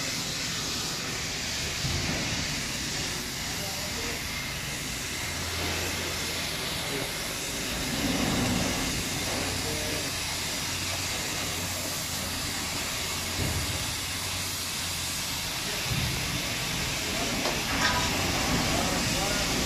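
Steady hissing noise at a ship-breaking yard, with a low hum that comes and goes and a few faint knocks.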